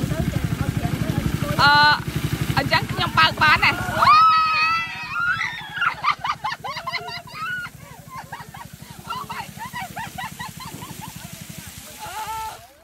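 Small motor boat engine running steadily with a fast, even beat, driving a pump that sprays canal water through two upright pipes onto the banks. It is loud for about the first four seconds, then fainter.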